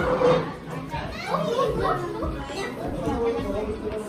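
Several people talking over one another, an indistinct overlapping chatter of voices.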